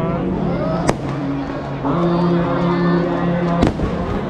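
Fireworks bursting during the burning of a Ravan effigy: two sharp bangs, about a second in and near the end, over a steady din of crowd voices and music.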